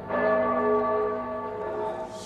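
A church bell, struck once just after the start, ringing on with several steady tones that slowly fade.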